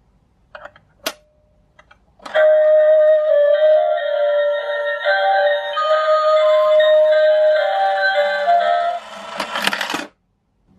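Minion stealing coin bank: light clicks as a coin is set on its plate, then the bank's electronic tune plays through its small speaker, with a faint motor hum under it as the lid lifts. Just before the end comes a quick plastic clatter as the figure snatches the coin and the lid snaps shut.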